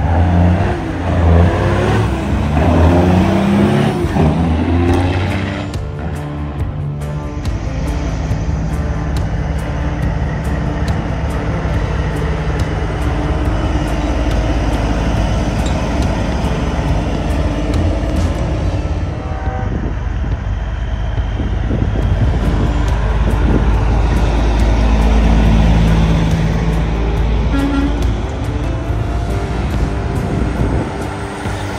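Diesel semi-truck engines pulling past. In the first few seconds the engine pitch climbs as one truck accelerates hard, throwing black smoke, then a steady low drone follows as more trucks roll by, swelling again near the end.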